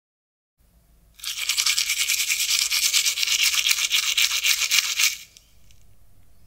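A toothbrush scrubbing teeth hard and fast: loud, scratchy back-and-forth strokes that start about a second in and stop near the end, played as the sound of brushing too hard.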